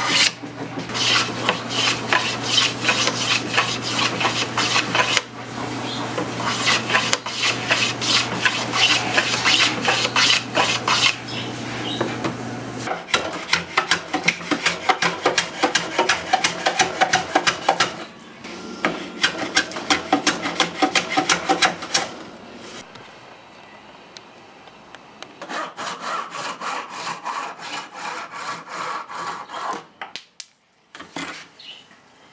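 Small hand plane shaving softwood in quick, repeated strokes, with a short quieter stretch about two thirds through.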